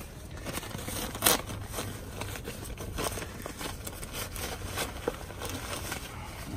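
Plastic postal mailer bag crinkling and crackling as it is cut open with a knife and handled, with one sharper snap about a second in.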